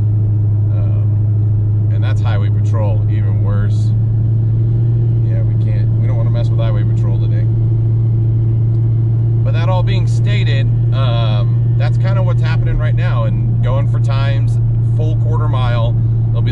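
Sixth-generation Chevrolet Camaro SS V8 heard from inside the cabin at a steady, gentle cruise: a loud, even low exhaust drone, from an exhaust with no quiet mode.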